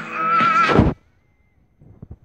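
A high singing voice holds a wavering note over music, then cuts off abruptly just under a second in. About a second of near silence follows, broken by a few faint clicks near the end.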